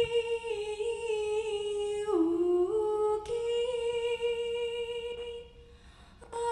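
A woman singing a slow folk melody alone and unaccompanied into a microphone, holding long notes. The melody steps down about two seconds in and back up a second later, and the phrase fades out near the end.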